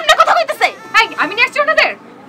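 A woman's shrill voice in quick, warbling bursts that rise and fall in pitch, as in angry shouting.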